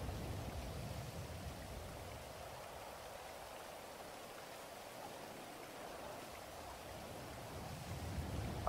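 Faint, steady rushing noise of a background ambience bed, like soft rain. It dips a little in the middle and swells again near the end.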